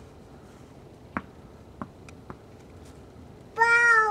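A tennis ball landing and bouncing on hard ground, three short knocks, each fainter and closer together. Near the end a small child's voice sounds a long, high-pitched 'oh' that slides down in pitch.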